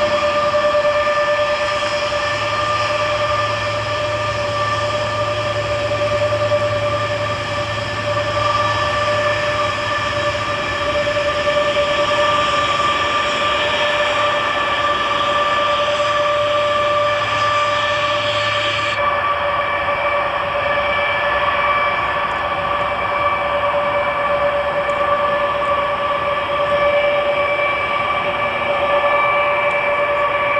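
Turbofan engines of a large four-engined military jet transport running as it taxis: a loud, steady multi-pitched jet whine over a rushing noise. About two-thirds of the way through, the highest hiss and a low hum drop away while the whine goes on.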